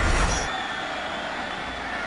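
Broadcast replay-transition whoosh under the animated MLS logo wipe, dying away within the first half second. It is followed by a steady hiss of stadium crowd noise.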